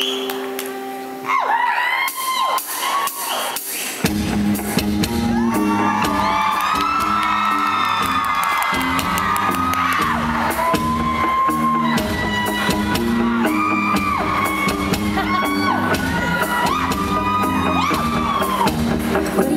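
Live rock band starting a song in a large hall: a held chord fades while the crowd whoops and shouts, then about four seconds in the full band comes in with electric guitars and a steady bass-and-drum rhythm for an instrumental intro.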